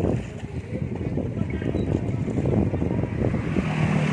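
Wind buffeting the microphone over water lapping against a boat hull, a steady rough rumble with no engine tone.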